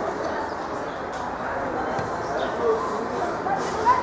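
Players and spectators calling out on a football pitch during play: a steady background of voices with a few short, sharp shouts, the loudest near the end.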